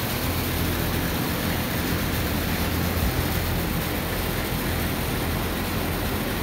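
Steady rushing noise with a low rumble underneath, with no clicks or changes.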